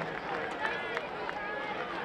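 Many girls' voices chattering over one another, with scattered light hand slaps, as two teams pass each other slapping hands in a post-game handshake line.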